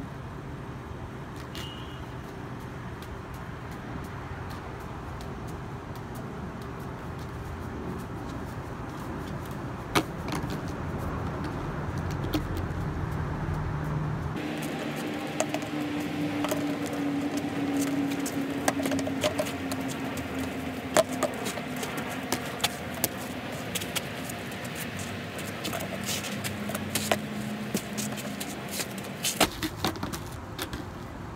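Outdoor urban ambience: a steady hum of traffic with scattered sharp taps. The background changes abruptly about fourteen seconds in.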